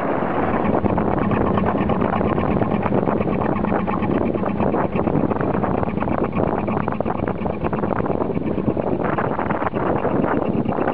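Wind buffeting the microphone over the steady running of a narrowboat engine, with choppy river water washing against the hull.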